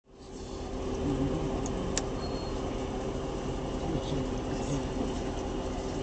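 Outdoor crowd ambience fading in: a steady low rumble with faint, indistinct voices in the background and a single sharp click about two seconds in.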